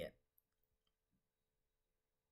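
Near silence: a faint steady hum, with a few faint computer mouse clicks in the first second or so as a web page is navigated.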